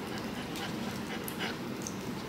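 Small dog having its fur trimmed with scissors: a few faint, short snips and handling sounds over quiet room noise.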